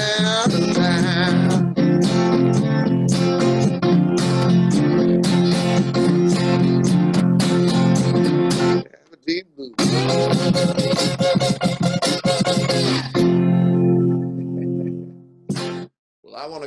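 A solo blues song on an archtop guitar, strummed and picked, with a man singing over it. The playing stops briefly about nine seconds in, resumes, and ends on a final chord that rings out and fades near the end.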